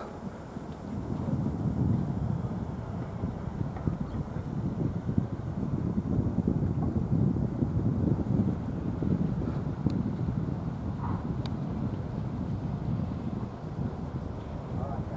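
Wind buffeting the camera microphone: a low, uneven rumble that rises and falls in gusts.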